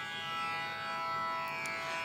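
Tanpura drone: a steady, sustained tonic drone with many overtones that swells slightly and eases back, and no plucks stand out.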